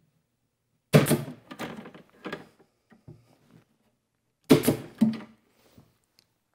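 Pneumatic pin nailer firing two sharp shots about three and a half seconds apart, each followed by a short trail of fainter clicks, tacking a hardwood cleat inside a wooden trunk.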